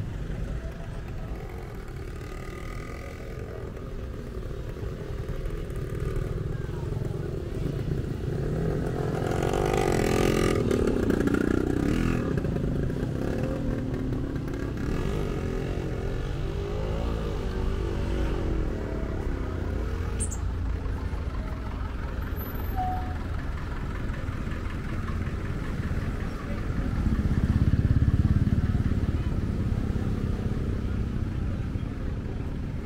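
Slow road traffic passing close by: engines of vans, cars and motorcycles running in a steady low rumble, with voices mixed in. A vehicle passing loudly near the end.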